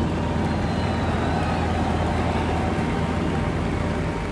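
Taylorcraft BC12D light aircraft's engine and propeller droning steadily in cruise, heard from inside the cabin.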